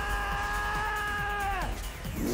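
A man's long, drawn-out yell, held at one pitch and falling off near the end, over low electronic film music.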